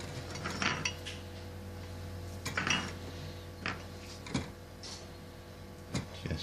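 A few separate light clicks and clinks of small metal hand tools being picked up and put down on a workbench, over a steady low hum.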